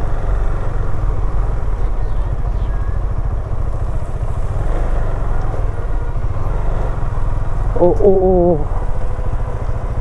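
A vehicle engine running steadily with a low rumble while driving over a rough, broken mountain road. A person calls out briefly near the end.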